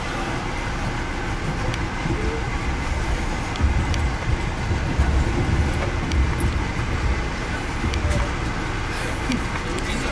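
Amtrak passenger train running, heard from inside the coach: a steady rumble and rolling noise that grows heavier and deeper from about three and a half seconds in.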